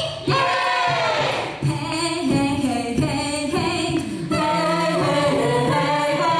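Female a cappella group singing a pop song in harmony into microphones, several voices together over held low notes.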